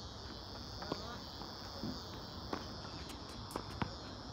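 Steady high-pitched chorus of insects, with a few sharp knocks of a tennis ball being struck by racquets and bouncing on a hard court. The loudest knock comes about a second in.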